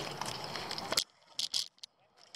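Water splashing and dripping as a landing net holding a fish is lifted from the water. It stops abruptly with a sharp knock about a second in, followed by a few faint rattling clicks of the net's frame and handle.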